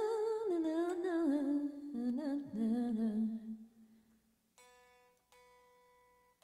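A woman's voice singing a wordless, falling phrase with vibrato that settles onto a held low note and fades out about four seconds in. Two soft, ringing instrument notes follow near the end.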